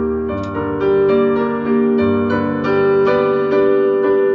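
Solo piano playing a slow piece, with chords struck about once a second and left to ring over held bass notes.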